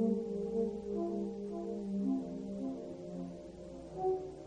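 1950s tape-recorder music: several held, horn-like tones layered over one another, each shifting pitch every half second or so.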